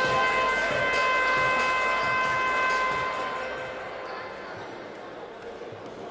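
Gym horn sounding one long, steady, buzzing tone for about three and a half seconds before fading out. A basketball bounces on the hardwood court and voices carry around the gym.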